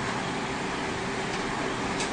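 Steady room background noise: an even hiss with a faint low hum underneath.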